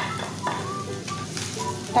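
Spiced chicken frying in a pan with a light sizzle as more food is tipped in from a bowl and stirred with a wooden spatula, with a couple of knocks against the pan near the start and about half a second in.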